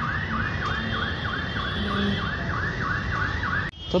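Electronic siren yelping, its pitch sweeping up and down about four times a second, then cut off abruptly near the end.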